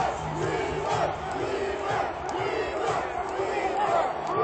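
Baseball stadium crowd cheering and yelling, many voices at once, celebrating the final out of a no-hitter.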